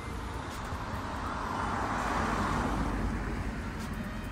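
A road vehicle passing by: a steady rush of tyre and engine noise that swells to its loudest about two seconds in, then fades.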